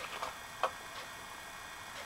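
A few light clicks of plastic toy castle parts being handled and moved, the clearest just past half a second in.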